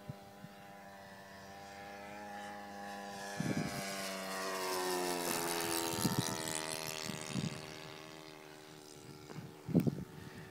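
O.S. 52 four-stroke glow engine of an RC model plane flying a pass. The engine note swells to its loudest about halfway through, then drops in pitch and fades as the plane flies away.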